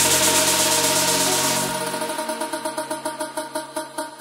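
Electronic dance track, a club remix: the full mix with its deep bass and high hiss drops out about two seconds in, leaving a pulsing synth pattern.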